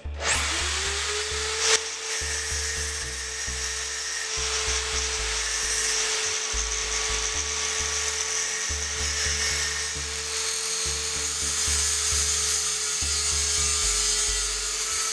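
A power tool motor spins up in the first second and then runs at one steady pitch, while an angle grinder's disc grinds against steel hex nuts turning on a bolt in a drill chuck, a dense grinding hiss throughout. Background music with a steady low beat plays underneath.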